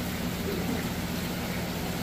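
Steady hiss of moving water with a low hum underneath, the sound of large aquarium filtration and pumps running.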